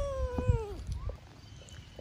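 A toddler's crying wail, one long held note that falls in pitch and breaks off about a second in. A thump comes partway through it.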